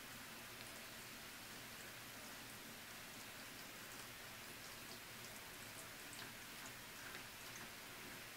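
Faint pattering and a scatter of small ticks from a cat in a plastic litter box, over a steady hiss; the ticks come mostly in the second half.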